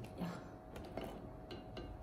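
Faint, scattered clicks and taps of boiled king crab shell knocking against a glass bowl as the legs are lifted and pulled apart by hand.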